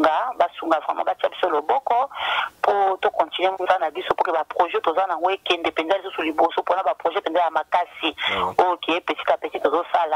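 Continuous speech heard over a telephone line, with a thin, narrow sound.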